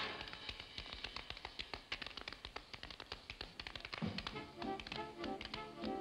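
Two dancers' tap shoes striking a stage floor in an unaccompanied tap break, a rapid run of sharp clicks. About four seconds in, a sparse band accompaniment with low notes comes back under the taps.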